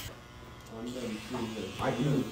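Electric hair clippers buzzing steadily, with voices talking over them from about half a second in.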